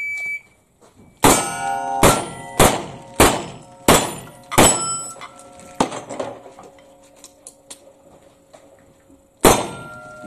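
Shot-timer start beep, then revolver shots at steel plates, each hit followed by the plate ringing. Seven shots come about two-thirds of a second apart, then a pause of about three and a half seconds with light clicks, then a final shot near the end.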